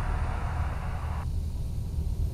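Cessna 172SP's four-cylinder Lycoming engine droning steadily, heard inside the cabin. A steady hiss over it cuts off suddenly a little past halfway.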